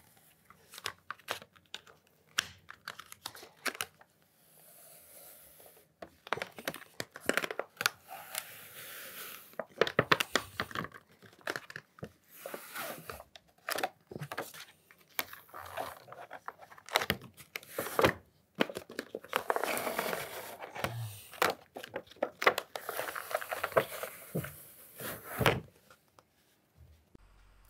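Old BuildTak adhesive sheet being pulled off a metal 3D printer build plate: the glued backing tears loose in irregular crackling rips, in a run of pulls with short pauses between them. The crackling stops just before the end.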